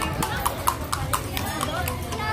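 Hooves of a carriage horse clip-clopping on stone paving as a horse-drawn kalesa passes close by, a run of sharp strikes several a second, with people talking around it.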